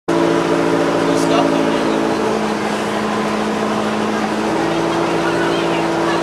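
Subaru rally car's flat-four engine running steadily while the car sits almost stationary, its pitch shifting slightly about four and a half seconds in.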